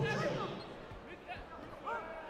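A few dull thuds of feet and kicks landing on foam mats and body protectors during a taekwondo exchange, under shouting voices in a sports hall.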